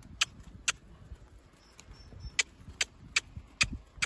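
Horse trotting on grass: sharp clinks from its tack and hooves, one with each stride about every 0.4 s, with a pause near the middle.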